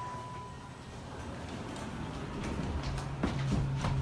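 ThyssenKrupp Signa 4 elevator: a steady electronic beep tone stops under a second in. A few clicks follow, then a low steady hum sets in about three seconds in.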